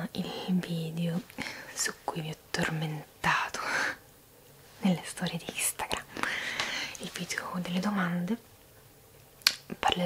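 A woman's voice speaking softly, partly in a whisper, close to the microphone, with a short pause near the end.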